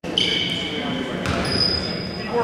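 A basketball bouncing on a hardwood gym floor in a large, reverberant hall, with voices and a few high steady tones in the background.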